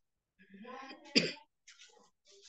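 A person coughing once, sharply, about a second in, just after a brief soft murmur of voice.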